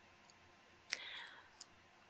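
Near silence with a faint click about a second in, a short trail after it, and a smaller click soon after.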